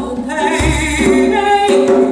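A woman singing held notes with vibrato, with a hand drum playing low beats beneath her voice.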